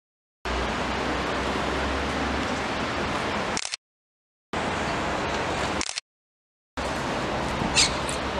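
Steady outdoor city street noise, an even hiss with some low traffic rumble, heard in three stretches that cut off abruptly into dead silence between them.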